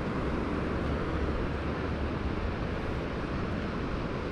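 Steady beach ambience: wind on the microphone as a low, even rumble, with a faint hiss of distant surf.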